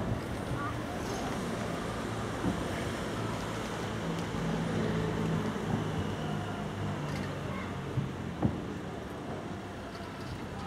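Distant aerial fireworks shells bursting far off: a few short bangs, one about two and a half seconds in and two close together near the end, over steady wind noise and people talking quietly nearby.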